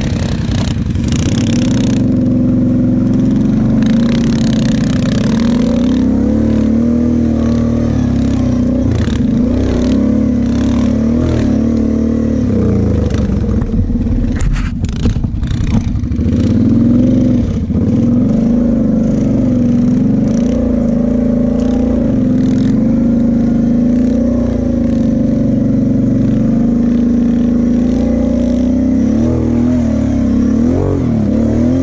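Kawasaki KFX sport quad engine running under the rider, its pitch rising and falling as the throttle is worked over the sand track. A short cluster of clattering knocks comes about halfway through.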